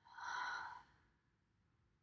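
A woman's breathy exhale, a sigh lasting under a second right at the start, then quiet room tone.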